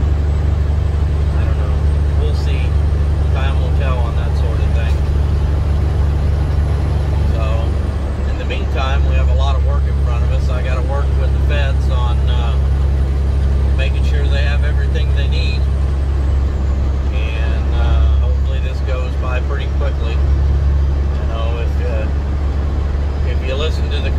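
Heavy truck's diesel engine droning steadily inside the cab while driving, with a man talking over it. The drone dips briefly about eight seconds in, then comes back.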